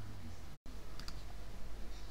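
Quiet room tone: a steady low hum and hiss with a couple of faint clicks, broken about half a second in by a split-second gap of dead silence where the audio drops out.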